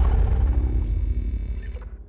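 Deep rumble and hiss of a cinematic logo intro's impact sound, dying away steadily and gone just before the end.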